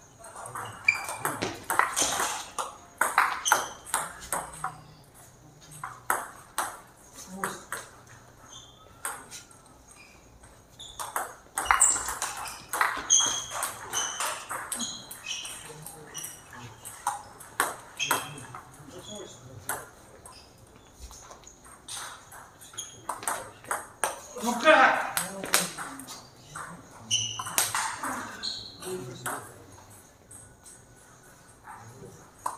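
Table tennis rallies: the plastic ball clicks back and forth off the paddles and the table in quick runs of strokes, with short pauses between points. Voices are heard in the hall between strokes.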